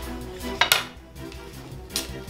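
Wooden sticks of shamanic divination flags knocking together as a flag is drawn from the bundle and waved: a sharp clack about two-thirds of a second in and another near the end, over background music.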